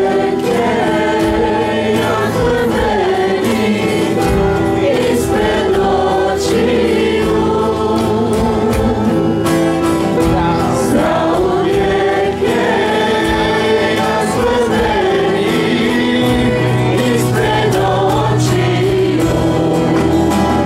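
Church worship band playing a praise song: several voices singing together over acoustic guitars and keyboard, at a steady level.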